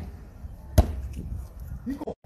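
A basketball hitting once, a single sharp knock about a second in.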